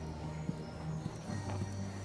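Music with long held low notes, over which a dressage horse's hooves strike the sand arena footing, a few dull thuds about half a second and a second and a half in.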